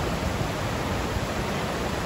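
Whitewater of a mountain river rushing over rocks in shallow rapids, a steady, even rush of water.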